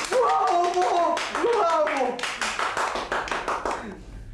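Applause: many hands clapping quickly and steadily, dying away near the end. A high voice calls out over the clapping in the first half.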